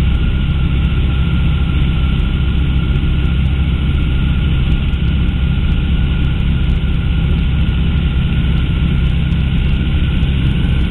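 Weight-shift trike's engine and pusher propeller running steadily in level cruise flight: a constant, unchanging drone with a faint steady tone above it.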